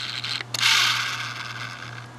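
Handling noise on a handheld camera: a click about half a second in, then a rustling hiss that fades away over about a second.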